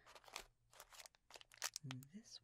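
Plastic wrappers of Reese's Peanut Butter Cup miniatures crinkling in quick, soft bursts as hands scoop through a pile of them. A soft voice begins near the end.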